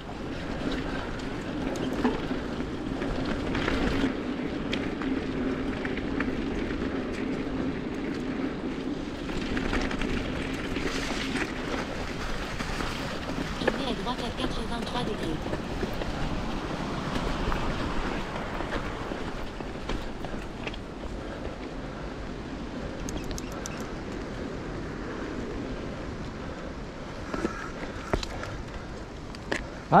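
Mountain bike riding over a leafy dirt and grass trail: steady tyre and rolling noise with wind on the microphone, scattered small clicks and rattles from the bike over bumps, and a low steady hum for roughly the first twelve seconds.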